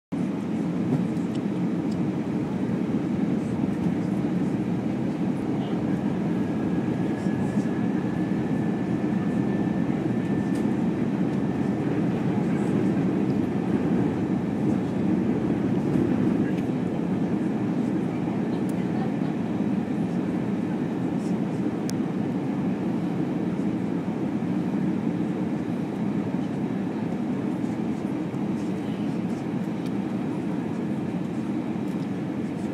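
Steady airliner cabin noise from a Virgin America Airbus in flight: the engines and airflow make a dull, even roar. A faint thin tone rises above it from about six to twelve seconds in.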